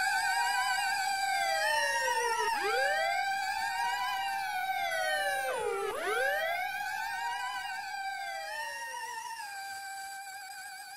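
Electronic acid-house track fading out: a held synthesizer note with a fast wobble under synth sweeps that swoop up and down like a police siren, about every three seconds.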